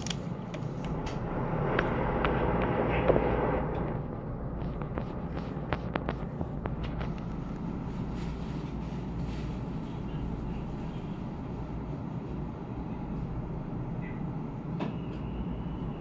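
Steady low hum inside a standing Chu Kuang Express passenger coach, with a louder rushing noise for a few seconds near the start and scattered light clicks and knocks.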